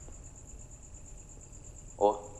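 Crickets chirring steadily: a high, evenly pulsing trill over a faint low background hum.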